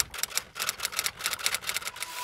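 Typewriter-style typing sound effect: a rapid, even run of key clicks, about eight a second, laid under a caption that types out letter by letter.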